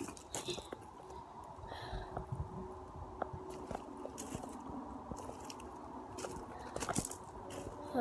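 Footsteps crunching on gravel, slow and irregular, with a few sharper crunches between quieter ones.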